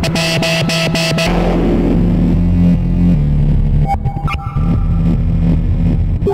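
Novation Peak synthesizer playing an improvised electronic piece: a held low bass tone under a noisy wash, with rapid clicking pulses in the first second and higher tones coming in about four seconds in.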